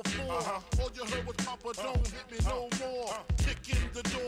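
Hip hop track: rapped vocals over a beat with heavy kick drums.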